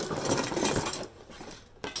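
A jumble of old metal kitchen utensils (a potato masher, whisks, spatulas, a ladle) clattering together as they are dumped out of a cardboard shipping box; the rattle lasts about a second, then settles into a few scattered clinks.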